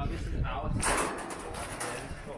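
Indistinct voices, with a short burst of noise about a second in.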